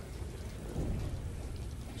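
Steady rushing noise over a deep rumble inside an old S-class submarine as it dives.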